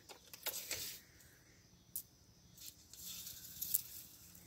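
Faint handling of a tape measure: light clicks and rustling, with one sharp click about two seconds in and a few small ticks near the end, over quiet outdoor background.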